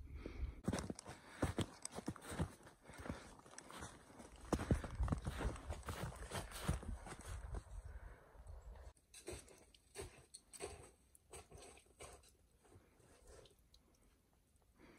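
Footsteps crunching on packed snow, an uneven run of crisp crunches that thins out and grows quieter after about nine seconds.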